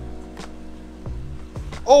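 Background music with steady sustained tones, with a man's loud exclamation "Oh!" near the end.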